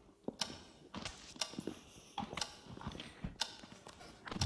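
Faint, scattered taps and knocks of handling as a bowl of cream is tipped and pressed onto a child's head, about a dozen irregular small clicks with no steady rhythm.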